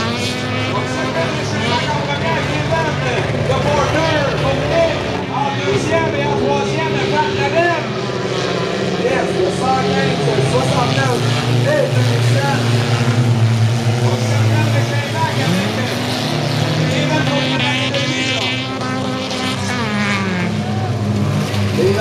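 Several four-cylinder stock car engines racing together, their pitch rising and falling over and over as the cars accelerate and lift through the corners.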